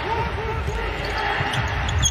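A basketball being dribbled on a hardwood court, repeated low bounces, over steady arena background noise.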